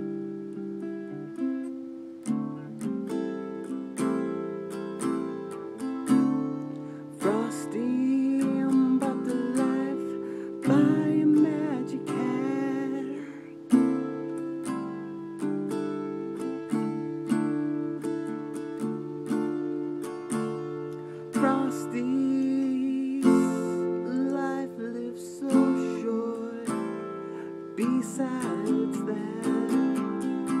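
Acoustic guitar strummed, with the chords changing every second or two.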